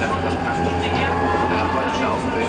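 Tram running along the tracks, heard from inside the rear car: a steady low drone with a thin whine near 1 kHz that rises slowly in pitch.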